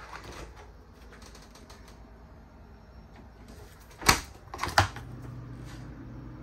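RV 12-volt Dometic refrigerator's freezer door unlatched and pulled open: two sharp clacks about four seconds in and just before the five-second mark, then a steady low hum.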